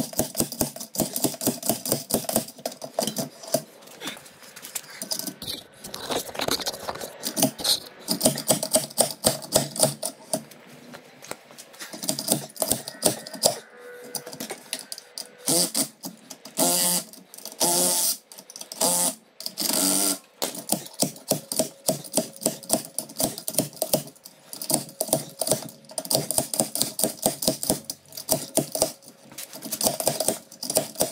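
Hand ratchet clicking in quick, rapid strokes, turning the forcing screw of a puller to pull a brake drum off a rear axle. A few longer, louder bursts come about two-thirds of the way through.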